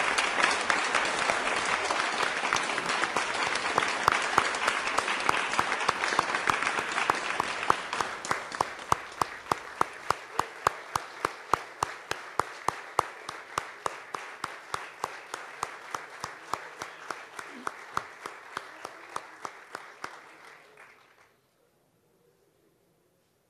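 Audience applauding. The dense applause thins after about eight seconds into steady, evenly spaced clapping at about three claps a second, which cuts off shortly before the end.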